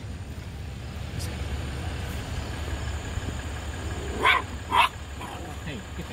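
A Chihuahua barking twice, about half a second apart, a little over four seconds in, over the low steady hum of a car's engine.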